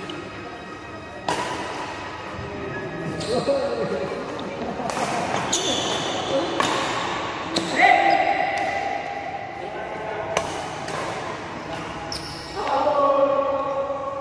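Badminton play: sharp racket strikes on the shuttlecock, roughly a second apart, with sneakers squeaking on the court floor and players' voices, all echoing in a large hall.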